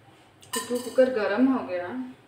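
Kitchen utensils and containers clinking and clattering, starting suddenly about half a second in, while whole spices are handled at the stove.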